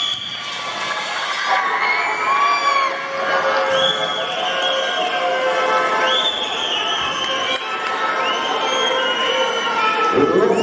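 Arena crowd with many children cheering and shouting in high voices, long rising-and-falling yells overlapping every second or two, during a lucha libre pinfall.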